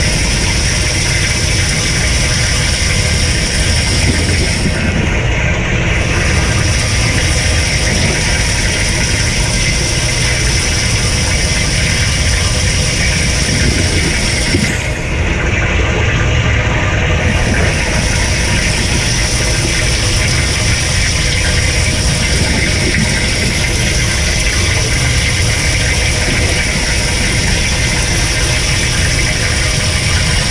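Kenmore dishwasher's wash pump running steadily with a low hum while the upper spray arm showers water over the dishes and the camera. The high hiss drops out briefly twice, about five seconds in and again for about two seconds around fifteen seconds in.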